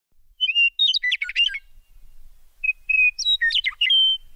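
A songbird singing two short phrases, each a clear whistled note followed by a quick run of chirps.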